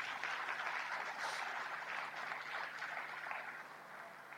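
Audience clapping in applause, dying away toward the end.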